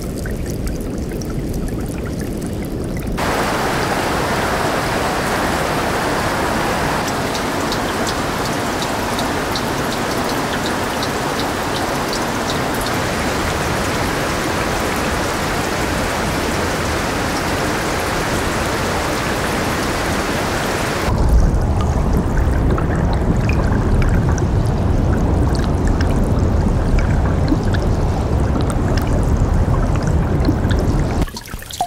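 Meltwater on a melting glacier: water trickling and running over and through the ice. About three seconds in it turns to a brighter hiss thick with fine clicking drips. At about 21 seconds it changes to a deeper, louder rush of flowing water.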